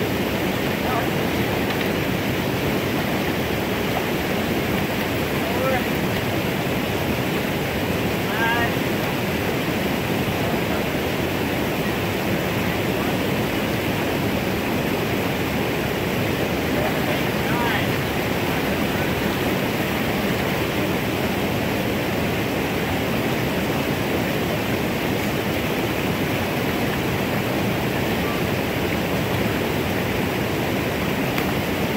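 Steady rush of whitewater from a small waterfall pouring into a creek pool, even and unbroken throughout.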